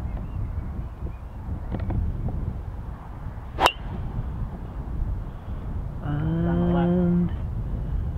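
A golf driver striking a ball off the tee: one sharp crack about three and a half seconds in, over a steady low rumble of wind on the microphone. About two and a half seconds after the strike comes a long, even, low vocal note held for about a second.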